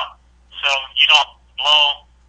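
Speech only: a man talking over a conference-call telephone line, a few short phrases.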